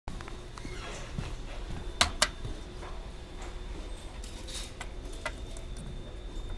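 Two sharp clicks about a quarter second apart over a steady low hum, with a few fainter clicks later.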